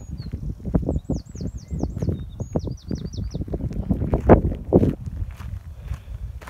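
Footsteps crunching and scuffing on a loose gravel and dirt path, with bumps from a handheld phone, the loudest about four seconds in. A small songbird sings two short phrases of quick, looping high notes, about a second in and again about two and a half seconds in.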